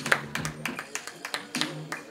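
Scattered hand claps from a few people, sharp and irregular, over soft background music; the clapping thins out near the end.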